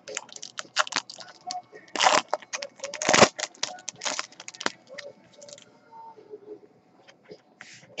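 Foil wrapper of a trading-card pack crinkling and tearing open by hand: a quick run of crackles and rustles, with the loudest tears about two and three seconds in, fading to soft handling of the cards after about five seconds.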